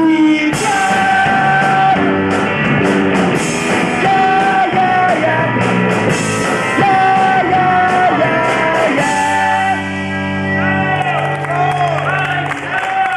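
Rock band playing live: electric guitars, bass and drums with cymbals, and a voice holding long sung notes.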